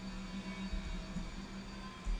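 A steady low hum under faint background noise, with no speech.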